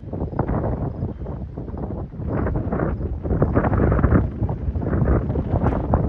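Strong wind buffeting the microphone, a loud gusting rumble that starts abruptly and surges irregularly.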